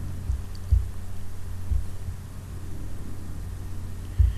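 Steady low electrical hum in the recording, with a few dull low thumps in the first two seconds.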